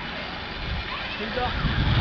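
Faint voices over a steady low rumble of outdoor background noise, with talk growing clearer near the end.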